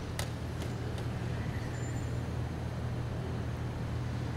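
Steady low rumble of city street ambience and distant traffic, with two sharp clicks right at the start.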